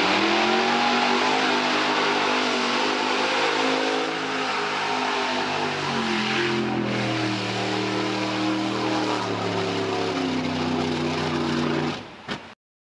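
A Ford mud bog truck's 557 cubic-inch V8 at high revs through a mud pit: it climbs in pitch at the start, holds high, then drops to a lower, steady pitch about six seconds in. A constant hiss of mud and water spray runs over the engine.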